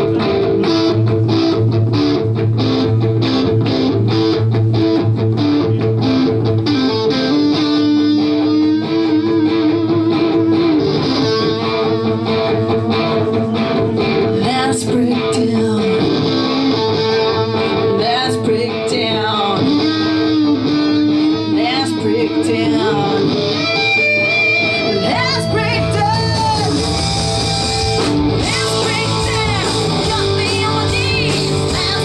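Live hard blues-rock band playing: distorted electric guitars over bass and a drum kit, the low end filling out in the last few seconds.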